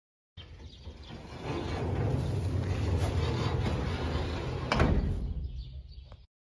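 Metal sliding door rumbling along its track, the rough rumble growing louder after about a second, with one sharp clang near the end.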